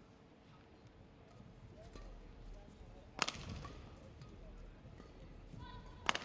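Quiet sound of an indoor badminton hall between rallies, with one sharp crack about three seconds in and a brief faint squeak near the end.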